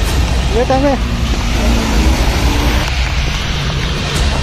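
Noise of a rainy street: a steady low rumble with a hiss of rain and wet road over it, and a brief voice sounding about half a second in.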